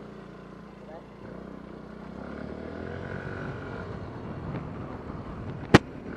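A small motor scooter's engine idles at a standstill, then pulls away about a second in. Engine and road noise build as it gets under way. A single sharp click sounds near the end.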